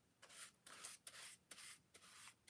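About five short, faint strokes of a paintbrush rubbing over a model base coated with tinted Mod Podge.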